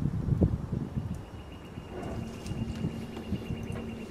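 Green Expert 1/3 HP submersible sump pump switching on under water: a faint steady motor hum comes in about a second or two in and keeps running. It sits over low wind rumble and a few knocks.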